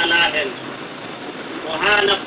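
A man's voice speaking in two short bursts, one at the start and one near the end, over a steady hiss of a low-quality recording.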